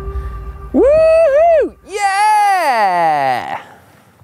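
A man's voice crying out twice in strain after a hard effort: a short high yell about a second in, then a long groan that falls steeply in pitch.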